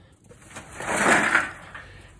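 A rusted steel burn barrel, shot full of holes, rolled along the grass to sift out its ashes: a rushing scrape that swells about half a second in and fades near the end.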